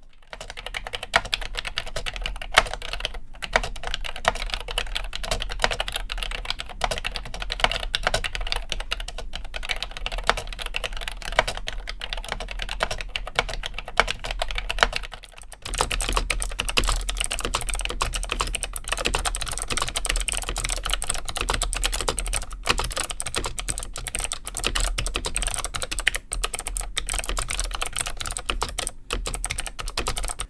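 Continuous typing on NMB Hi-Tek Series 725 'Space Invader' mechanical key switches, a deep, bassy clatter of keystrokes, demonstrated in a linear and a clicky version. A brief pause about halfway through marks the change to the second keyboard, whose typing sounds brighter and sharper.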